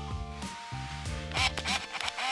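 Background music with held notes moving from one pitch to the next.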